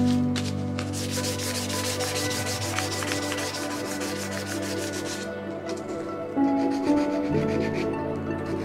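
Sandpaper rubbed by hand over the white-coated surface of a hollow wooden sculpture, in rapid even strokes that start about a second in and stop about five seconds in. Background music plays throughout.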